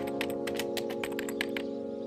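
Computer-keyboard typing clicks, several a second, over held chords of background music. The clicks thin out and stop in the last half-second.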